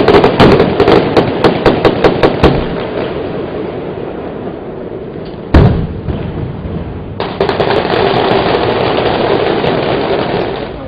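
Film-set pyrotechnics: a rapid string of sharp, gunfire-like pops over the first two and a half seconds, then a single loud explosion about five and a half seconds in. The explosion is followed by a steady, loud rushing noise.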